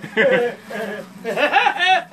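Men's voices making wordless vocal sounds, ending in a quick rising squeal.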